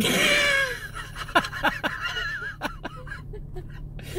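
A man and a woman laughing inside a car: a loud laugh falling in pitch at first, trailing off into scattered chuckles, over a low steady cabin hum.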